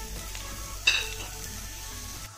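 Tempering of mustard seeds, dried red chillies and sliced shallots sizzling in hot oil in a pan, with a single ringing metal clink just under a second in.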